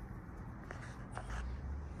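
Quiet outdoor background: a low rumble with a few soft clicks and rustles.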